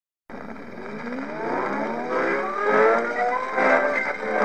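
Opening of an old rebetiko record: a bouzouki glides slowly upward in pitch, growing louder, then settles into rhythmic strummed strokes near the end. The recording sounds narrow and muffled, with hiss above.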